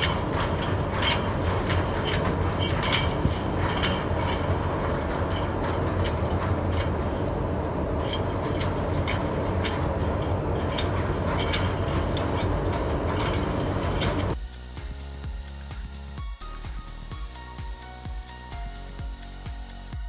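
Steady engine drone with wind and water noise aboard a moving vessel. About two-thirds of the way through it cuts to quieter background music with a steady beat.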